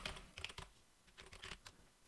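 Faint computer keyboard keystrokes: a few scattered clicks as code is typed, quiet near the end.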